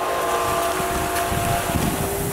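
Salt brine churning and gurgling in a plastic IBC tote as water is forced up through rock salt to dissolve it. The gurgle is the sign the water is circulating and mixing the brine. A faint steady machine hum runs underneath.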